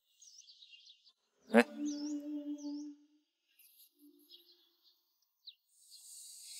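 Small birds chirping in the background. About a second and a half in, a single sharp knock rings on in a low tone for about a second and a half, and a shorter soft tone sounds near the four-second mark.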